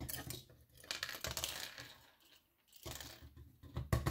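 Small plastic LEGO Technic connector pins clattering and rattling as they are shaken out of a LEGO beam-frame container onto a hard table. The clatter comes in two bursts, with a short pause between them.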